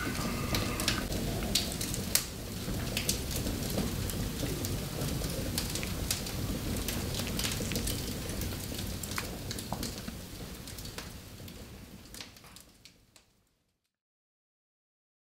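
Wood fire burning in a fireplace, crackling with scattered sharp pops over a steady hiss; it fades out over the last few seconds.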